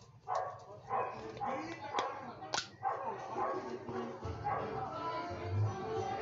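A dog barking several times among background voices and music, with two sharp clicks about two seconds in.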